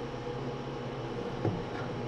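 Steady low background hum with a single faint click about one and a half seconds in.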